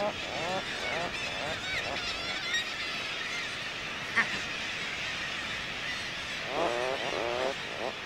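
Atlantic puffins calling in a colony: quick series of short notes, each rising and falling in pitch, at the start and again about seven seconds in. Fainter, higher bird calls sound behind them, and there is one short click about four seconds in.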